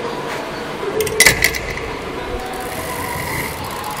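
A short metallic rattle of clicks and knocks about a second in, with a brief ringing note, from a steel chain-and-sprocket side-stand mechanism model. Steady background noise runs under it.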